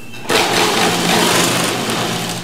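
Sewing machine stitching net fabric onto a gold border. It starts suddenly about a third of a second in and then runs steadily, a motor hum under the clatter of the needle.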